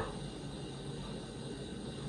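Faint steady background hiss of room tone, with no distinct events.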